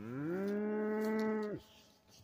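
A cow mooing once at close range: a single call that rises in pitch at the start, then holds steady before cutting off after about a second and a half.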